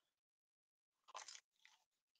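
Faint crunching of a bite of turon, a crisp fried banana spring roll, being chewed, with a couple of soft crunches in the second half.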